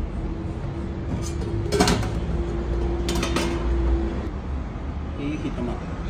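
Kitchen background noise: a steady low rumble with a steady hum for the first four seconds, and two sharp clatters about two and three seconds in.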